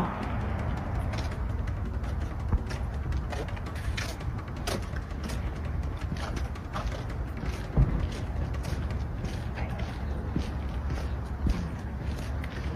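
Footsteps on pavement, about two a second, over a steady low rumble of wind and handling noise on a phone microphone.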